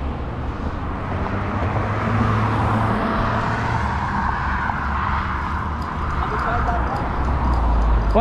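Wind buffeting the microphone of a camera riding on a moving bicycle, with road traffic alongside; the traffic noise swells and fades in the middle as a car goes by.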